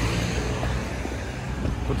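Van driving past close by, its engine hum and road noise fading as it moves away.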